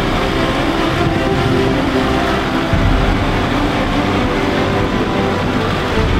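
Kubota tractor's diesel engine running steadily while it works a front-end loader.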